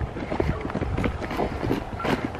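Wind buffeting the camera's microphone in a low, uneven rumble, with small knocks and footsteps on a dirt path as the camera is carried along.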